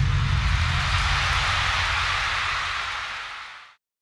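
Large arena crowd cheering and applauding after the song ends, a dense even roar that fades out and is gone about three and a half seconds in.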